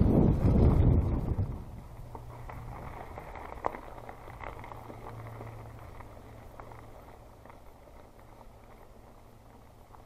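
Mountain bike riding a dirt trail: rolling and rattling noise with scattered small clicks, loud for the first second or so, then much quieter and fading to a low steady hum.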